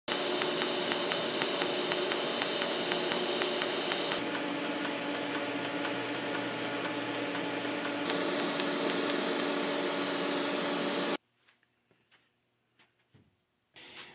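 TIG welding arc on small stainless steel round parts turning on a welding turntable: a steady hiss and buzz that shifts in tone about four and eight seconds in, then cuts off suddenly about eleven seconds in.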